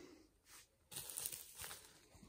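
Faint rustling and crinkling of plastic wrapping being handled, in a short spell of about a second.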